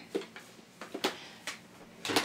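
A handful of light clicks and knocks, about six, spread over two seconds: objects being handled and set down.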